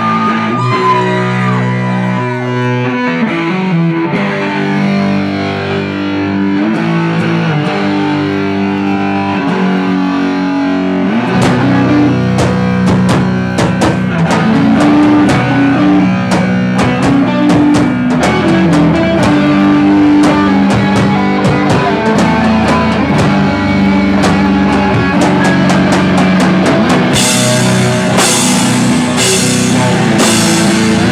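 Live rock band with electric guitar, bass and drum kit. The guitar plays held notes alone at first. Drums and bass come in about eleven seconds in, and cymbal crashes follow near the end.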